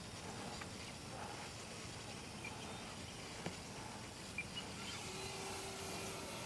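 Faint outdoor ambience with the distant hum of an electric RC warbird's motor and propeller overhead. A faint steady tone comes in about five seconds in as the plane draws nearer.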